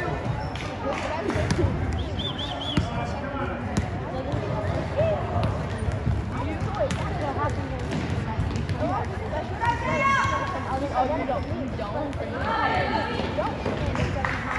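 Futsal ball kicked and bouncing on a hardwood gym floor, mixed with players' and spectators' shouts in an echoing gym. The shouting is loudest about ten seconds in and again near the end.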